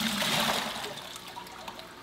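Water pouring and splashing out of a plastic fish bag into an aquarium as the fish are released, loudest in the first second and then tapering off.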